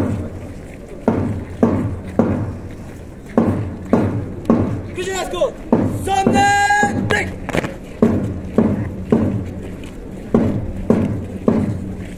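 A drum beating a steady march tempo, about two beats a second, with a raised voice shouting for a couple of seconds near the middle.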